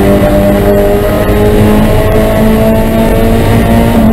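Spec Miata race car's four-cylinder engine running at high revs under full throttle, heard loud and steady from inside the cockpit with road and wind noise.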